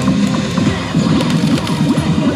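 Loud, busy music and electronic din of a pachislot parlour around a Sammy Disc Up slot machine, with a few short sharp clicks about a second in as the spinning reels are stopped.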